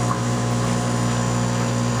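Aquarium pump equipment humming steadily, a constant low electric hum with a light watery hiss over it.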